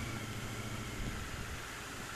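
Royal Enfield Continental GT 650 parallel-twin running at low riding speed, a steady low hum under a hiss of wind and road noise.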